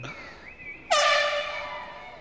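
Arena horn giving one sudden blast about a second in: a steady, reedy pitched tone that fades slowly. It is the signal that the horse-and-cow run is over.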